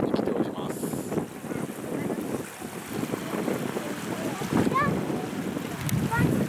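Wind buffeting the microphone, with small waves lapping at the shore of a lake. A few brief high chirps come near the end.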